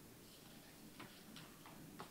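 Near silence: room tone in a pause between speech, with a couple of faint ticks about halfway through.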